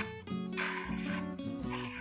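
A Playmoji Charizard's creature cry from the AR camera app, two short rough cries, one about half a second in and a shorter one near the end, over acoustic guitar background music.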